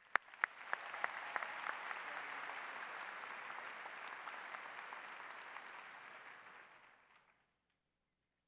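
Audience applauding: a few single claps at first, swelling within the first second into steady applause that fades away shortly before the end.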